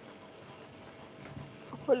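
Faint steady background hiss, then a person's voice begins speaking, starting to read aloud, near the end.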